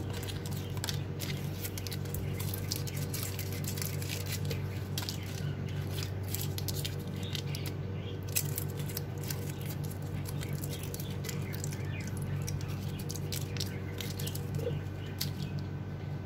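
Foil wrappers of Kiri cream cheese portions being peeled open, crinkling and clicking in short irregular bursts as the cheese is dropped into a plastic blender jar. A steady low hum runs underneath.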